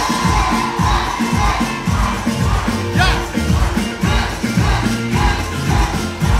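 A live band playing a song with a steady, heavy drum beat, the crowd's voices mixed in with it.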